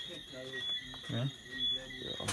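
A man's voice saying a few short words ("yeah, yeah"). Behind it runs a faint, steady high-pitched tone that swells briefly now and then.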